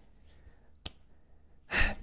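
Quiet room tone with a single faint click a little before halfway, then a man's quick, audible intake of breath near the end.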